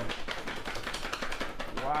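Black fabric cover rustling and crackling as it is pulled off a model, a dense run of small clicks, with a man saying "wow" near the end.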